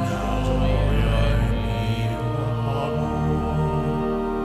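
Church organ playing sustained chords with singing of the opening hymn at Mass, the voices strongest in the first few seconds before the organ chords carry on alone.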